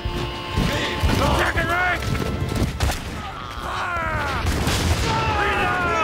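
Battle noise: men shouting and crying out, each cry falling in pitch, over musket volleys and booms.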